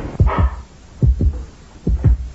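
Heartbeat sound effect of tense score: low double thumps, lub-dub, repeating a little under once a second, with a short rushing sound just after the start.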